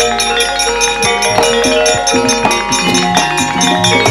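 Javanese gamelan playing: bronze metallophones ring in a steady run of struck notes over kendhang hand-drum strokes.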